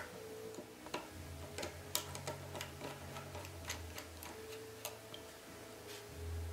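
Irregular light clicks and taps of small hand tools against the plastic flash-head parts of a camera flash during bench repair, over a steady low hum.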